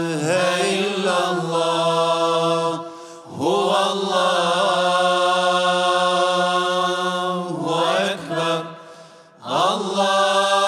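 A single voice chanting an Islamic recitation in long, drawn-out phrases with wavering ornaments on the held notes. It breaks off for breath about three seconds in and again near nine seconds.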